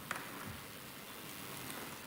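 Faint lecture-hall background noise: an audience stirring and moving about, with a light knock just after the start.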